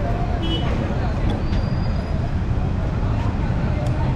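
Steady low rumble of city road traffic from the street beneath.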